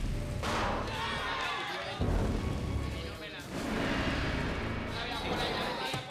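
Deep booms with sudden starts, one as it begins and a louder one about two seconds in, over dramatic music.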